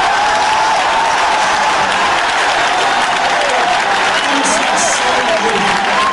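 A congregation applauding steadily, with voices calling out over the clapping.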